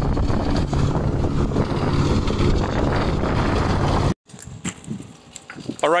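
Zero-turn riding lawn mower running steadily while mowing. The sound cuts off abruptly about four seconds in, leaving quiet outdoor air with a few faint knocks.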